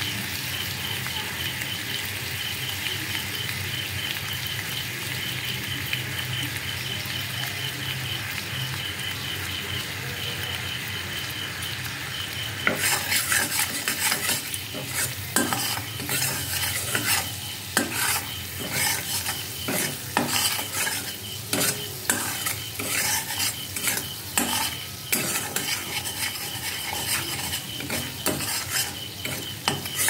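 Sugar syrup bubbling and sizzling in an aluminium wok, a steady hiss. A little before halfway a metal spatula starts stirring, scraping repeatedly against the pan.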